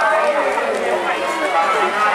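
Only speech: a voice talking fast without pause, the running commentary over a long-boat race.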